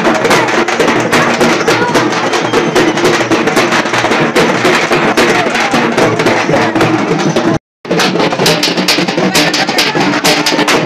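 Fast, loud drumming with music, many strokes a second. The sound drops out completely for a moment about three quarters of the way through.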